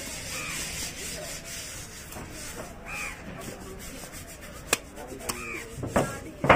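A large knife scraping and cutting through a seer fish on a wooden chopping block, with a sharp knock of the blade on the block near the end. Crows caw three times over it.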